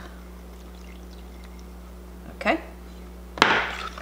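Milk poured from a glass measuring cup into beaten egg in a plastic tub, quiet over a steady low hum. Near the end a fork starts mixing the egg and milk with a sudden loud burst.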